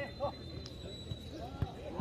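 A jokgu ball being kicked and bouncing during a rally: a few short knocks, the loudest about a second and a half in.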